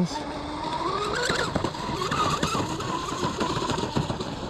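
Pro Boat Blackjack 42 RC boat's brushless motor whining as the throttle is opened, the pitch climbing over the first second or so to a high whine held near full throttle, with rough, crackling noise beneath it.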